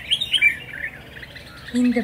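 Small birds chirping: a quick run of loud, high chirps in the first half second, then fainter chirping.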